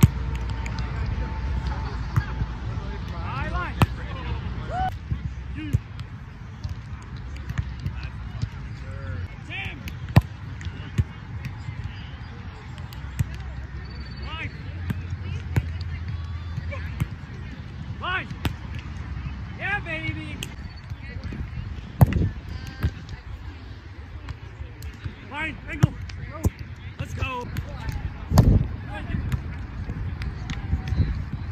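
Grass volleyball rally: sharp slaps of hands and forearms on the ball as players pass, set and hit, several times over, the loudest two near the end. Players' voices call out briefly between contacts.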